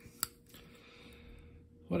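A single sharp click from a pocket multi-tool being handled and folded.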